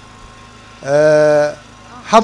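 A man's amplified voice through a handheld microphone, holding one steady, drawn-out vowel for under a second about a second in, between pauses in his speech.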